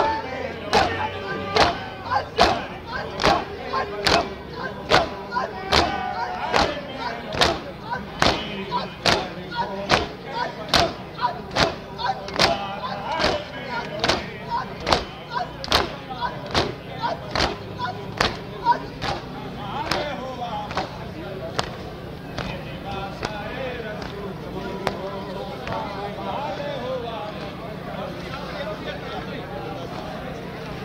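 A crowd of mourners doing matam, beating their chests in unison with sharp, even slaps about one and a half a second, while a voice chants a lament over it. The beating stops about two-thirds of the way in, and the chanting goes on.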